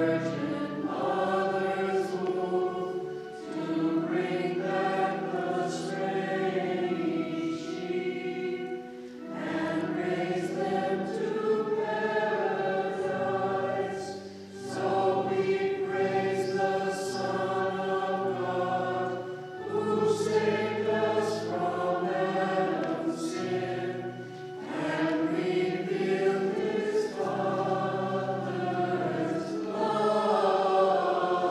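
A group of voices singing a liturgical hymn together in a church, in phrases of about five seconds with a short breath between each.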